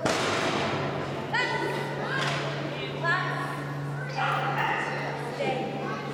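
A loud thud as a Doberman comes down an agility contact plank, followed by the handler's short, rising calls to the dog, repeated about five times, over a steady low hum.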